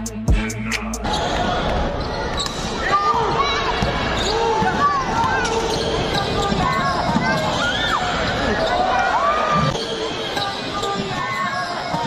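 Basketball game sound in an indoor arena: many short sneaker squeaks on the hardwood court and the ball bouncing, over the murmur of players and spectators. Hip hop music plays at the start and cuts off about a second in.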